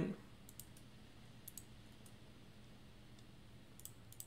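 Faint computer mouse clicks in quick pairs, three times, as dropdown menus are opened and an option picked.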